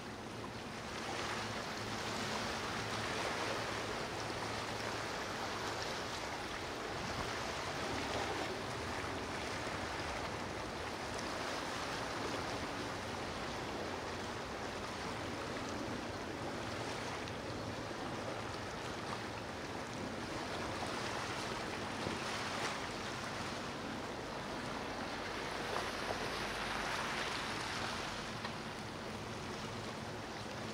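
Steady rushing water and surf, like a boat's wake churning through the sea, with a faint low hum underneath.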